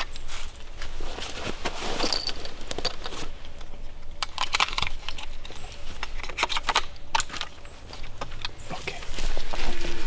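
Sharp clicks and rattles of a scoped hunting rifle being handled, its box magazine pushed into place. Near the end, footsteps through forest undergrowth.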